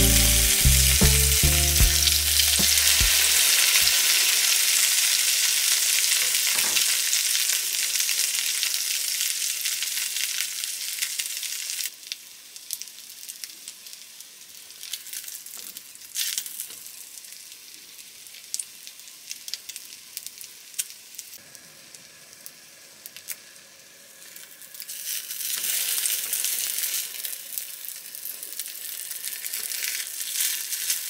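Egg-soaked baguette slices frying in an iron frying pan, with a steady sizzle. The sizzle drops quieter about twelve seconds in, with light clicks of tongs handling the slices, and swells again near the end. Background music fades out in the first few seconds.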